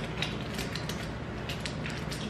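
Wooden snap mouse traps being set by hand: small metal clicks and creaks from the spring bars and catches, several light clicks spread irregularly through.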